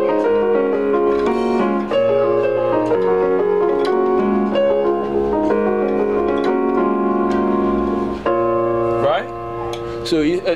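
Portable electronic keyboard on a piano voice playing arpeggiated chords under a melody line kept on top, the notes changing a few times a second over held bass notes. The playing stops about nine seconds in.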